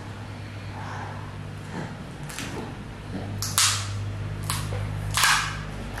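Coloured pencil drawing on a workbook page: four short scratchy strokes on paper in the second half, over a steady low hum.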